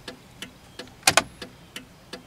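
1995 Cadillac Fleetwood turn-signal flasher ticking at a steady pace, about three clicks a second, with a louder double click about a second in. The steady rate is a normal flash: it shows the repaired bulb socket now lets the signal work properly instead of blinking fast.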